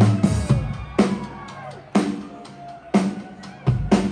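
A live band playing: drum kit and bass drum hits about once a second, with sustained electric and acoustic guitar chords ringing between them.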